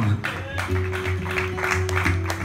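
Acoustic guitar played lightly, with held notes ringing on from a little under a second in.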